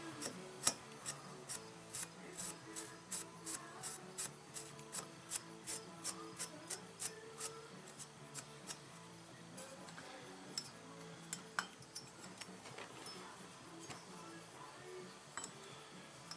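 A Scotch-Brite pad scrubbing the sealing surface of a McCulloch Mac 140 chainsaw crankcase: faint, quick rubbing strokes, about two to three a second, thinning out in the second half. The surface is being cleaned and polished to take new crank seals.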